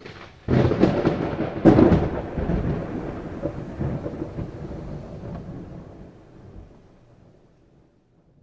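Title-card sound effect: a sudden rumbling crash about half a second in, a second, louder crash near two seconds, then a long rumble that fades out over the next several seconds.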